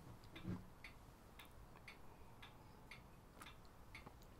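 Near silence with faint, regular ticking, about two ticks a second.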